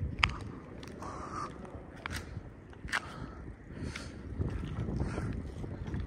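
Low wind rumble on the microphone with faint footsteps and a few small clicks as the camera is carried forward along the road.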